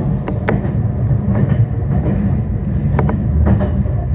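Meitetsu Bisai Line electric train running on the rails, heard from inside the car at the front window: a steady low rumble with a few sharp clicks, two near the start and two about three seconds in.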